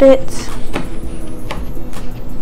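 A table knife cutting through a soft bread sandwich, with a few short clicks as the blade meets the plate.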